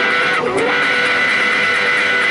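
Pons Guitars convertible electric guitar played through an amplifier. A note bends about half a second in, then one long note rings out, held.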